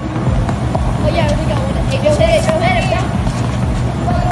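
Faint, high-pitched children's voices from across a tennis court over a steady low rumble.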